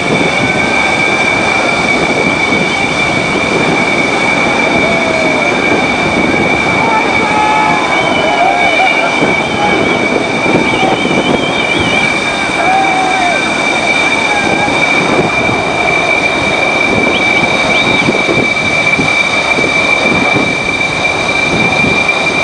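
Loud, steady rush of wind and sea on the deck of a warship under way, with a constant high-pitched whine running unbroken through it.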